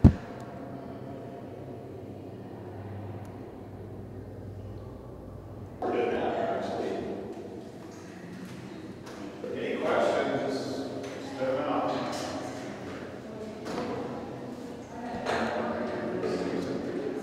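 Indistinct voices of a group of people talking inside a concrete chamber, starting about six seconds in, over a low steady hum. A single sharp knock sounds at the very start.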